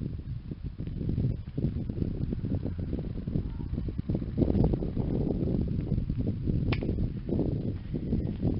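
Gusty low rumble of wind buffeting the microphone, rising and falling unevenly. A short high chirp sweeps upward near the end.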